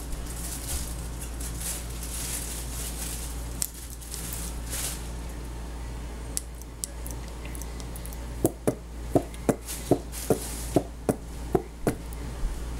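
Plastic squeeze bottle of salad dressing being squeezed and emptied into a glass blender jar: soft hissing at first, then a quick run of about ten sharp pops, two or three a second, in the last few seconds as the bottle sputters out dressing.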